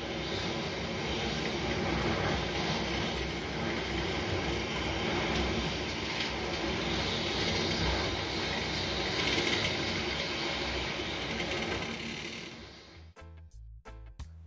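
Nature-documentary soundtrack playing back: a dense, steady rushing noise with a low rumble underneath, fading out about a second before the end.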